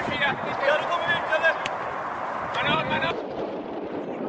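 Voices of people talking or calling out over a rushing background noise; the voices stop about three seconds in, leaving only the steady rushing.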